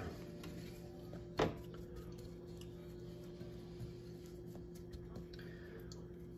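Faint handling of a fish fillet being pressed into dry breading mix in a glass bowl, with one sharp knock about a second and a half in, over a steady low hum.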